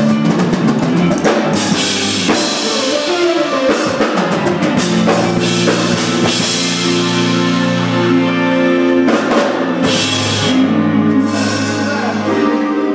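A live band playing: a drum kit with a quick drum fill in the first second or so and several cymbal crashes, under held electric guitar notes.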